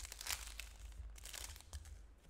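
Foil trading-card pack wrapper crinkling and crackling as it is torn open and pulled off the cards, with the loudest crinkles about a third of a second in and again around a second and a half.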